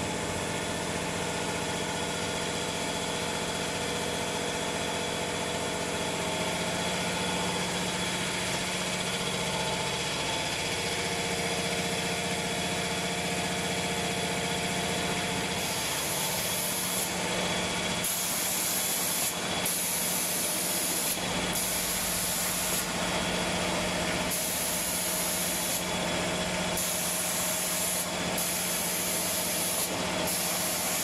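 Automatic spray-painting machine running with a steady mechanical hum. From about halfway through, its air-atomising spray guns hiss on and off in repeated bursts of a second or so, switched by the machine's controller.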